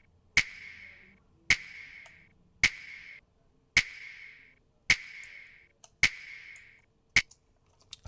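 Soloed hip-hop clap sample playing back in a loop: seven sharp claps, about one every 1.1 seconds, each with a hissy decaying tail. An EQ boost in the upper mids, around 1–2 kHz, makes the claps more present and in your face.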